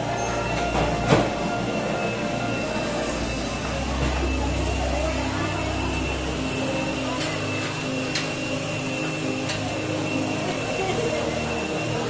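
Indistinct background chatter of a group of people over steady sustained tones, with a single sharp knock about a second in.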